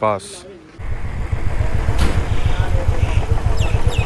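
Motorcycle engine running while riding, a rapid low thumping under wind noise on the microphone. It cuts in about a second in.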